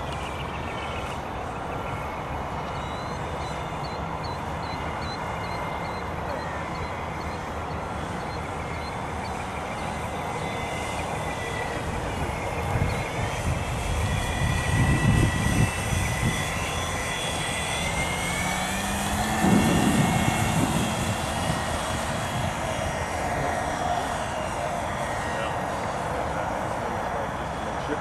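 Model autogyro's engine and propeller buzzing overhead in flight, the pitch sliding down and then back up as it passes and the throttle changes. Two loud low rumbles cut in about halfway through.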